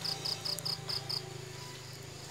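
An insect chirping in a quick, even series of short high-pitched pulses, about five a second, that stops a little over a second in, over a low steady hum.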